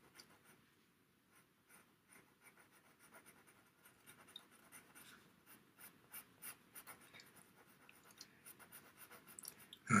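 Faint, light scratching of a pastel pencil stroked across PastelMat pastel paper with little pressure, the strokes sparse at first and coming more often in the second half.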